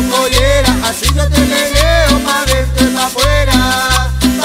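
Cumbia band playing an instrumental passage with no vocals: a pitched lead melody with bending, gliding notes over a steady, evenly repeating bass line and percussion.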